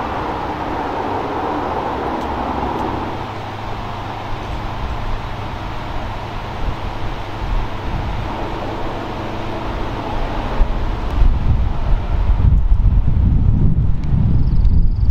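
Diesel locomotive engine running steadily as the train approaches. In the last few seconds a heavier, louder low rumble with uneven peaks comes in.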